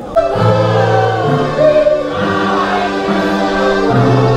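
A portable electronic keyboard playing a slow hymn in sustained, held chords with a choir-like sound, the chords changing about every second. It starts abruptly just after the beginning.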